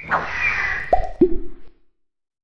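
Cartoon sound effects for an animated logo reveal: a short noisy swish, then two quick plops that drop in pitch about a second in, the second lower than the first.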